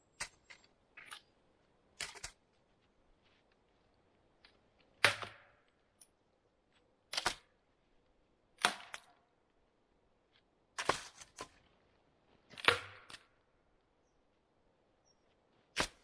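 Dead tree branches being snapped off and broken by hand for firewood: about eight sharp cracks, each a couple of seconds apart, some trailing a short splintering crackle.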